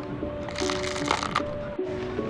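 Small hard candy-coated sweets clattering as a plastic scoop digs into a bin of them and tips them into a bowl, with a burst of rattling about half a second in. Background music with a simple stepping melody plays throughout.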